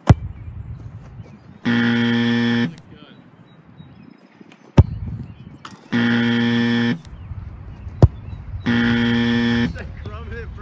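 A low, harsh buzzer sound, like a game-show 'wrong answer' effect, sounds three times, about a second each, with identical steady tone. Three sharp thuds come in between: one just after the start, one just before five seconds in and one about eight seconds in.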